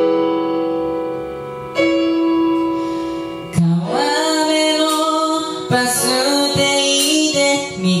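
Piano intro of a karaoke backing track: sustained chords. About three and a half seconds in, a young man's voice starts singing into a microphone over the piano.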